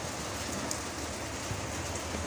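Steady, even hiss of background noise with a faint low hum underneath.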